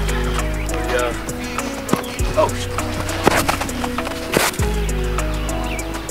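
Background music: deep held bass notes and chords under a beat of short clicks.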